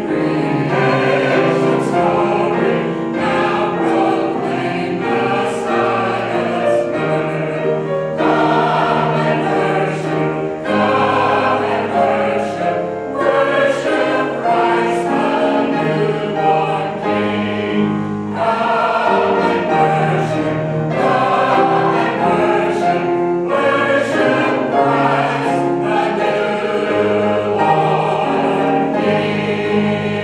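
Senior mixed choir of men's and women's voices singing a choral piece in sustained chords.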